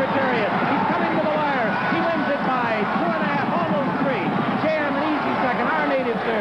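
A horse-race caller's voice calling the stretch run and finish over a cheering grandstand crowd, many voices overlapping at a steady level.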